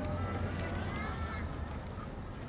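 Footsteps of people walking and running on a paved path, with voices in the background and a steady low rumble underneath.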